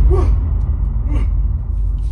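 A man gasping in shock, with a couple of short breathy vocal gasps, over a deep, loud low rumble that began abruptly just before.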